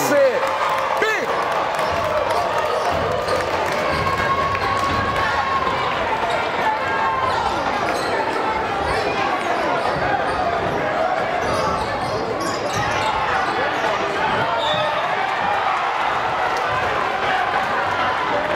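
A basketball game crowd in a gym, with many voices shouting and cheering at once and a brief swell right at the start. A basketball is dribbled on the hardwood court under the crowd.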